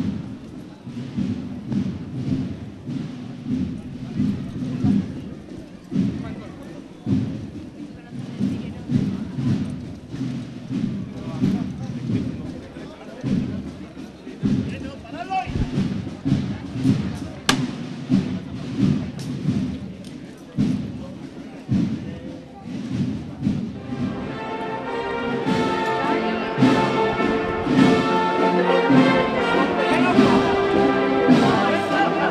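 Processional band's drums beating a march rhythm as a run of low thuds. About 24 seconds in, the band's melody instruments join and a processional march swells up.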